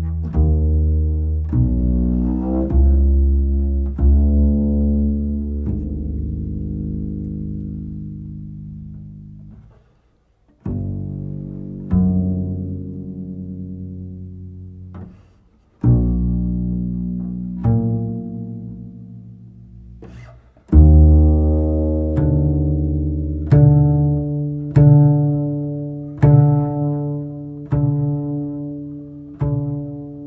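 Solo double bass played pizzicato: plucked low notes that ring out and slowly die away, broken by a brief pause about ten seconds in and another about fifteen seconds in. In the last third the plucked notes come in a steadier run, about one a second.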